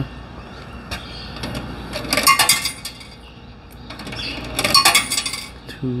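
Quarters dropping into the coin box of a coin-operated turnstile, each landing with a quick run of metallic clinks. Two coins go in, one about two seconds in and one near the end.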